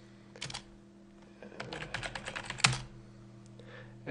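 Computer keyboard typing: a couple of quick keystrokes about half a second in, then a fast run of keys ending in one louder keystroke, as a terminal command is entered and the sudo password typed.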